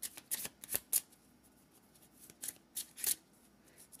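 Deck of oracle cards being shuffled by hand: short, irregular flicks and snaps of the cards, several in the first second and a few more later on.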